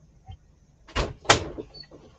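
Two sharp knocks about a second in, a third of a second apart, the second louder, from objects being handled on a desk.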